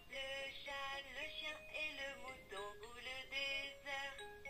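VTech Rhyme & Discover Book toy playing a recorded French rhyme: an electronic-sounding voice singing over simple backing music through the toy's speaker.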